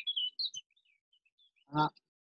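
A small songbird chirping: a quick burst of high chirps and short trills in the first half second, then a few scattered fainter chirps.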